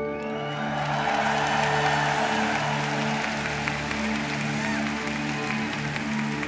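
A live rock band's final chord ringing out, with a low note pulsing on and off beneath it, as the arena audience applauds and cheers.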